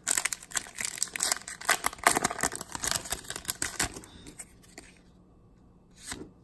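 Foil wrapper of a Pokémon card booster pack being torn open and crinkled by hand: a dense crackle of tearing, rustling foil for about four seconds, which then dies away to quiet.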